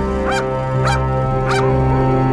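A large chained dog barking three times, about half a second apart, over a steady music score.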